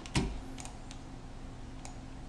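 A few short, sharp clicks of a computer keyboard and mouse over a faint steady hum: one just after the start, a couple more about two-thirds of a second in, and another near the end.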